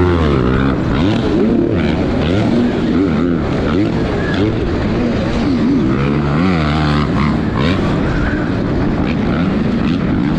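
Dirt bikes racing on an arenacross track, heard on board from the rider's helmet camera, their pitch rising and falling again and again as they rev through the turns.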